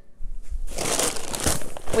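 A large sack of flour being lifted up, its bag rustling and crinkling loudly, with a couple of dull knocks as it is handled.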